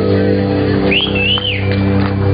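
A live band holds its final chord on guitars, bass and keyboard, ringing steadily. About a second in, someone whistles a high note that rises and falls twice.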